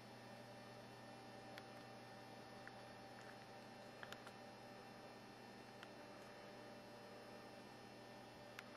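Near silence: a steady low electrical hum with a handful of faint, short clicks scattered through it.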